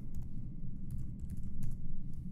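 Typing on a computer keyboard: a quick, irregular run of key clicks as code is edited.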